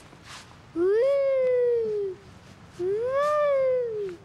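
A person's voice giving two long, drawn-out calls, each sliding up in pitch and then down again: a yodel-style mountain call.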